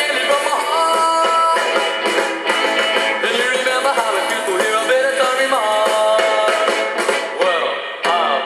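Rock and roll band music, with held notes about a second in and again near six seconds.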